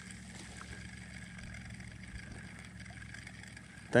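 Faint, steady low hum of a distant engine over light outdoor background noise.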